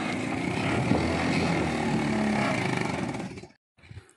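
Homemade 125cc mini jeep's engine running steadily as it drives along a muddy dirt track. The sound cuts off suddenly about three and a half seconds in.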